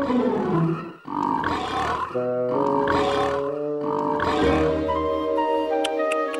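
A cartoon cat's roar-like vocal sounds in short bursts about once a second, over music with held notes.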